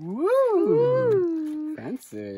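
A person's wordless, drawn-out vocal call that slides up and back down in pitch twice, then holds a steady lower note for about half a second before breaking off.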